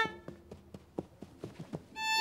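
Quick, light footsteps on a hard stage floor, about a dozen irregular steps, in a pause between violin phrases. A short violin note trails off at the start.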